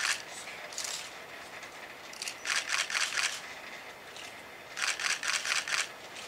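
Short runs of rapid mechanical clicking, about six clicks a second: a brief run at the start and about a second in, then longer runs around the middle and near the end, over a faint hiss.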